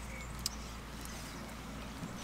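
Quiet outdoor background: a steady low rumble with a faint short high chirp at the start and a single sharp click about half a second in.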